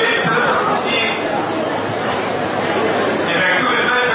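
Speech in a large hall: a man talking into a handheld microphone, with chatter under it.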